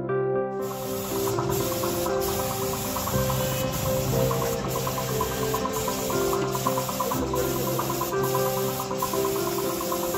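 Air-fed gravity spray gun hissing steadily as it sprays paint, with short dips in the hiss every second or so. Background music plays under it.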